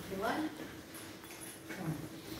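A brief, faint spoken fragment near the start, then low room tone.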